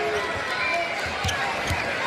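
A basketball being dribbled on a hardwood court: a few low bounces about half a second apart, over steady arena crowd noise.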